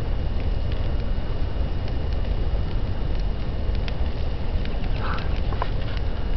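A burning couch: the steady rush of a large fire with scattered sharp crackles and pops from the burning wood and upholstery.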